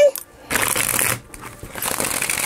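A deck of tarot cards being shuffled by hand: two stretches of papery riffling, one starting about half a second in and another near the end.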